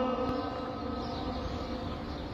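The echo of a muezzin's amplified call to prayer dying away after the phrase "Allahu akbar", over about half a second. It leaves a steady, low open-air background hum.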